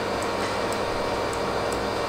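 Steady hiss of a pink-noise test signal playing through a loudspeaker as the measurement signal for a live Smaart transfer-function measurement.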